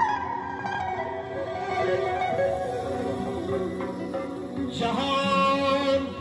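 Live band music: a melody on electric guitar and keyboard over a doira frame drum, playing steadily, with a stronger, fuller passage near the end.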